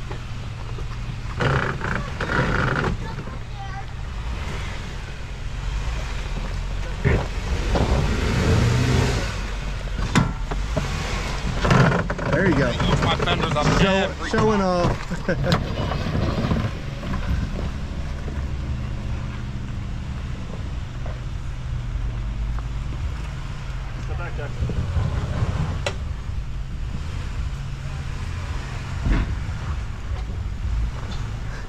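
Jeep engines running at low speed as the Jeeps crawl up a rutted dirt trail: a steady low rumble that swells at times. Voices call out briefly in between, most clearly about halfway through.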